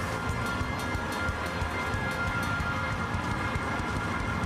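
Praise-break music filling a large church, with held steady tones over the dense noise of a standing congregation. It runs on without a break.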